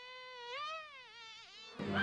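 Cartoon bee buzzing effect: a single buzzing tone that holds, rises, then sinks with a wavering pitch before cutting off near the end, where music comes in.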